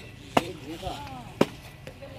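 Sharp knocks repeating evenly about once a second, twice in these two seconds, with a short spoken call between them.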